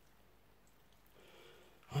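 Near silence, then about a second in a faint, short breath drawn in before speech begins at the very end.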